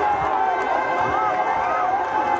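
Crowd of spectators shouting and calling over each other, many voices at once.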